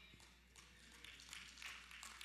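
Near silence: room tone with a steady low hum and faint scattered taps.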